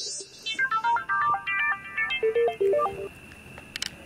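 Mobile phone ringtone for an incoming call: a quick tune of short electronic notes that stops about three seconds in. Two sharp clicks follow near the end.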